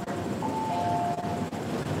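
Metro platform screen door chime: two held electronic tones, a higher one joined a moment later by a lower one, sounding for about a second, over the low rumble of a train at the platform.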